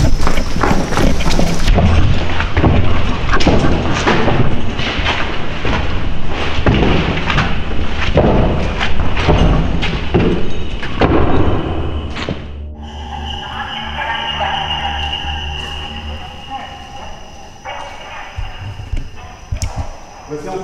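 Loud, irregular thumps and knocking mixed with voices for about twelve seconds. The noise cuts off suddenly and gives way to an eerie music bed of steady sustained tones.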